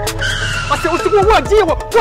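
A skid squeal as a motorcycle brakes to a stop: a high squeal that falls slowly in pitch for over a second. Excited voices break in over it about a second in.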